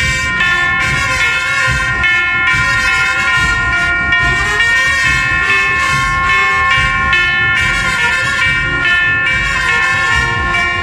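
Processional marching band of trumpets and cornets playing a march, the brass holding long, steady chords that shift only now and then.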